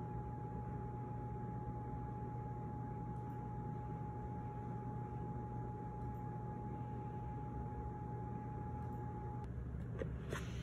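A steady low hum from a running household appliance, with a thin steady whine above it that stops shortly before the end.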